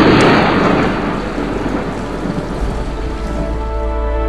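A thunderclap, likely a stock sound effect, cracks right at the start and fades into rumbling over steady heavy rain. Music begins to come in near the end.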